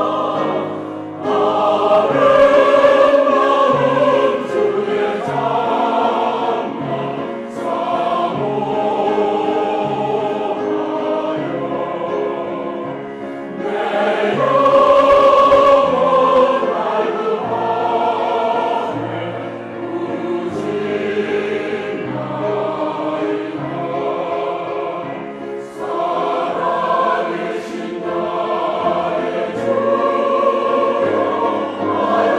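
Mixed church choir singing a Korean anthem in parts, with grand piano accompaniment. Sustained phrases swell louder about a second in and again midway through.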